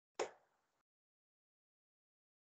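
A single short pop about a quarter of a second in, then dead digital silence: a video-call participant's audio feed dropping out mid-sentence.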